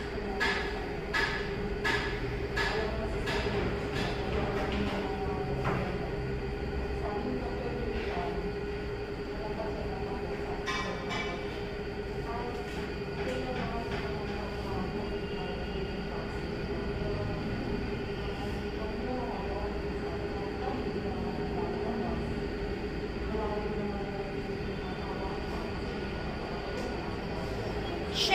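A steady mechanical hum with one constant tone throughout. Over the first several seconds, soft regular rustles come from a hospital gown and linens being handled. Faint voices murmur in the background.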